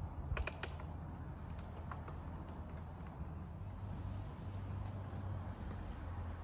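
Small mechanical clicks and rattles from hands working on the scooter's parts, with a cluster of sharp clicks about half a second in, over a steady low hum.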